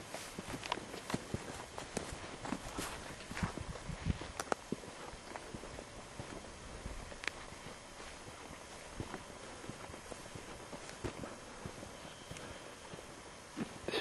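Footsteps of a person walking, several steps a second for the first few seconds, then only an occasional step over a faint steady hiss.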